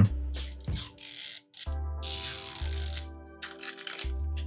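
Hands working a plastic toy capsule: short plastic clicks and crackles, then the rasp of a sticker seal being peeled off. Background music with sustained tones comes in under it.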